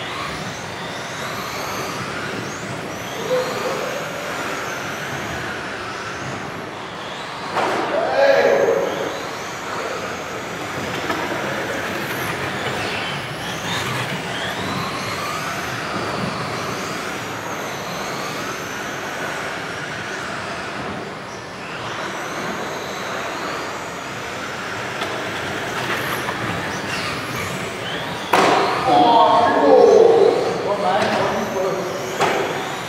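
Radio-controlled model cars racing laps in a sports hall: high motor whines rise and fall in pitch with their speed over a steady hiss of tyres on the floor covering. There are louder moments with voices about eight seconds in and near the end.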